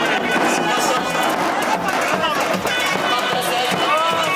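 Live folk dance music: a reedy wind instrument playing held, wavering notes over the beat of a large davul drum, with the voices of the dancing crowd mixed in.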